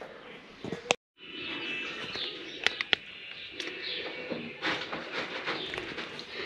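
A domestic pigeon in a wooden nest box being disturbed off its nest. There are a few sharp clicks in the middle and rustling near the end.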